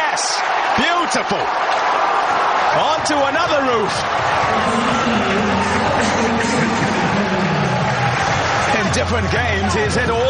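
Stadium crowd cheering and shouting after a six, with many whoops rising and falling in pitch over a steady roar of voices.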